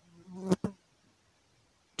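Two sharp computer-keyboard key clicks about a tenth of a second apart, as the value 60 is typed. Just before them a brief low buzz grows louder.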